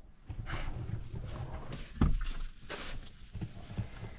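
Rustling and shuffling of a person shifting about inside a car's cabin, with a single thump about two seconds in.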